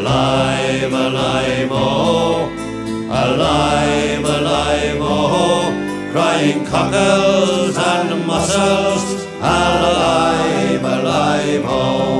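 Irish folk ballad: voices singing over guitar accompaniment.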